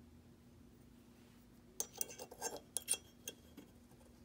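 Light metal clicks and clinks, several in quick succession starting a little under halfway in, as a steel breech block is set by hand into the channel of a Phoenix Trinity Honcho pistol slide.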